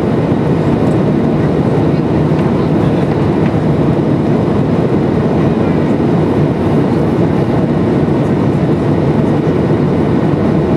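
Cabin noise of a Boeing 737-800 in the climb after takeoff, heard from a window seat by the wing: the steady, deep rumble of its CFM56-7B engines and rushing airflow, holding an even level throughout.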